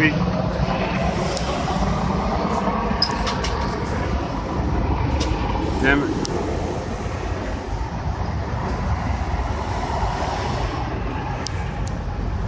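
Helicopter passing overhead: a steady low rotor chop and engine noise that eases slightly as it moves off into the distance.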